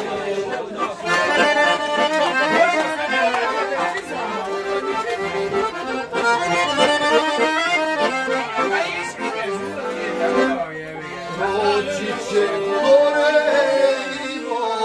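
Piano accordion playing a lively traditional folk tune.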